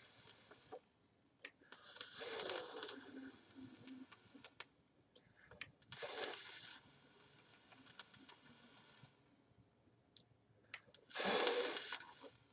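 A person blowing out hard three times, each a long hissing breath a few seconds apart, as the previous e-liquid is cleared from a vape, with a few light clicks between.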